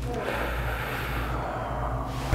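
A man breathing out heavily in one long breath, steadying himself as he tries to regain his composure after an emotional spinal adjustment.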